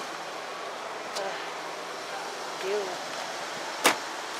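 Steady outdoor street noise with a faint voice about two and a half seconds in, and a single sharp thump near the end.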